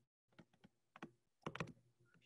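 Faint, scattered clicks from a computer keyboard, a few isolated ones and then a quick cluster of three about one and a half seconds in, over near silence.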